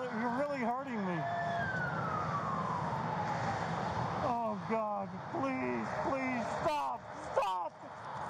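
An emergency vehicle's siren gives one long wail, rising to a peak about a second in and then falling slowly, over steady road noise heard through a police body camera. Men's voices break in briefly at the start and again through the second half.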